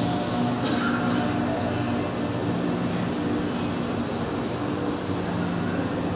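Steady rushing background noise of a large hall full of people, with a faint low hum running under it.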